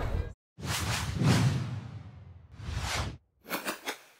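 Whoosh sound effects of an animated logo sting: one long whoosh that swells and fades, then two shorter ones near the end.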